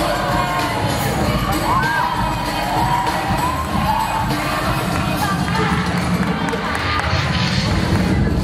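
Audience cheering and shouting over loud dance music with a steady bass line.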